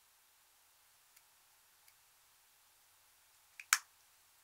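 Two faint ticks, then near the end a small click followed at once by a sharp, much louder click: a hard plastic makeup compact clicking as it is handled.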